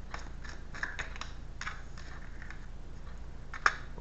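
A deck of tarot cards being shuffled by hand: a run of soft, irregular card clicks, with one sharper, louder snap near the end.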